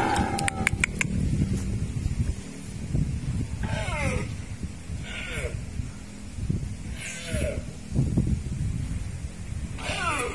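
A rusa deer stag calling: short, falling, pitched cries, three through the middle and another at the end, over a steady low rumble.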